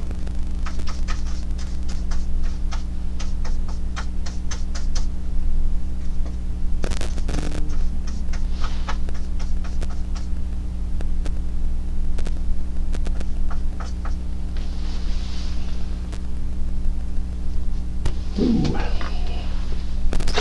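Steady electrical mains hum with a ladder of low harmonics, over scattered light clicks and taps, densest in the first few seconds.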